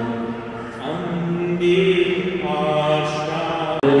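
A man's voice intoning a prayer in long held notes, the pitch stepping from note to note, with a short break near the end.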